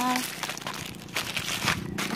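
Plastic bag of food crinkling as it is handled and shaken out onto the ground for a stray dog.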